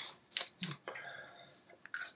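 Two BIC Comfort Twin disposable twin-blade razors scraping over dry beard stubble on the neck, without shaving cream, in a few short scratchy strokes.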